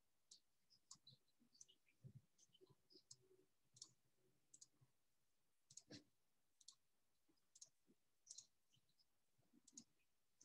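Near silence with faint, irregular clicks of a computer mouse as the page is scrolled. The loudest click comes about six seconds in.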